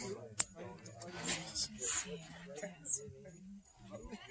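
Quiet voices talking, too low for the words to be picked out, with a single sharp click about half a second in.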